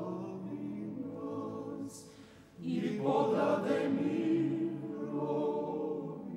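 Choir singing an Orthodox Byzantine chant, a troparion in the fifth mode, a cappella with sustained voices. One phrase fades out about two seconds in and a fuller, louder phrase begins about half a second later.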